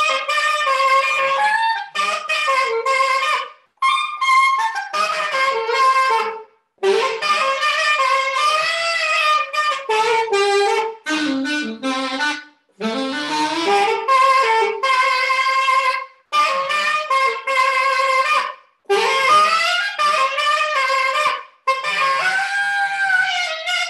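Unaccompanied alto saxophone playing a melody in phrases, with brief silent breaks for breath between them.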